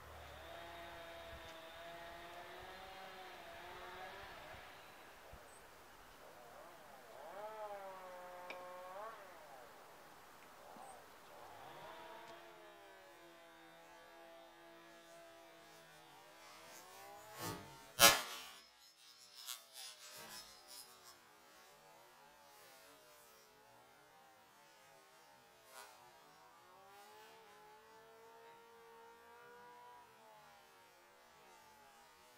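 One hard mallet blow smashing into an old laptop's keyboard, a single sharp impact about 18 seconds in, followed by a few lighter knocks. Faint wavering tones that rise and fall run underneath at other times.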